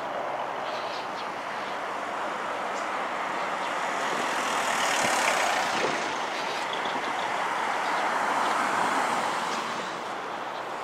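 Road traffic: vehicles passing, the noise swelling to a peak about five seconds in and again shortly before the end.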